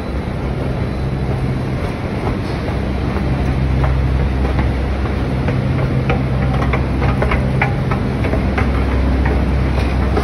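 Moving escalator running with a steady low rumble, and a run of short clicks from the steps about six to eight seconds in.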